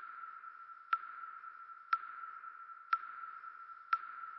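A sonar-like electronic ping in a film trailer's sound design: a steady high tone with a sharp ping about once a second.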